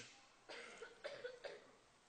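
Near silence, broken by a few faint, short sounds between about half a second and a second and a half in.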